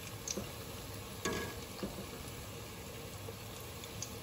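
Gram-flour-battered potato patties deep-frying in hot oil in a stainless steel pot, with a steady sizzle. A few light knocks come from a slotted metal spoon stirring them, the clearest about a second in.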